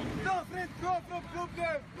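A person's voice shouting a rapid string of short, high-pitched calls, about three a second.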